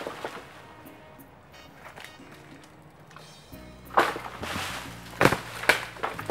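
A bamboo pole jabbing into a coconut tree's fronds and nuts to knock them loose: a sharp knock about four seconds in, followed by rustling, then two more knocks near the end. Background music plays underneath.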